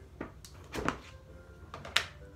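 A plastic ice cream tub being handled on a table: a few short, light knocks and clicks, the sharpest one near the end.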